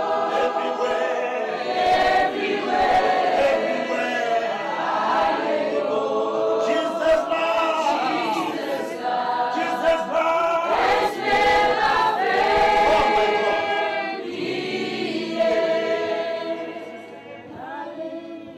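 A group of voices singing a gospel song together, getting quieter over the last few seconds.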